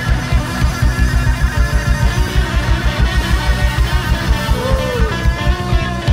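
Live rock band playing: a drum kit drives a fast, even beat under electric guitars and bass, and a guitar bends a note about five seconds in.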